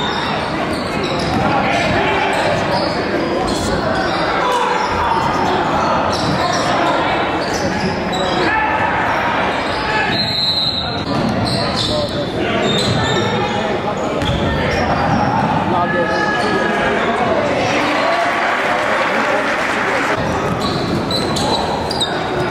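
Live sound of a basketball game in a large gym: a basketball being dribbled on the hardwood court, with indistinct crowd voices echoing around the hall.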